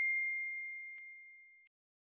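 The ringing tail of a notification-bell 'ding' sound effect: one high, pure tone dying away over about a second and a half, with a faint tick about a second in.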